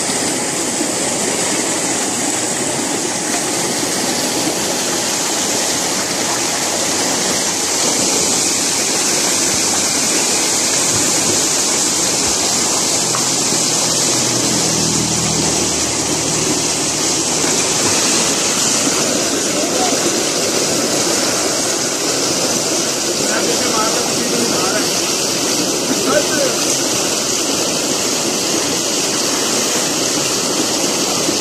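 Tube well water gushing from an outlet pipe into a concrete tank, a loud, steady rush of pouring and churning water.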